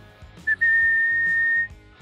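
A single high whistled note: a brief blip, then one steady tone held for about a second that cuts off suddenly.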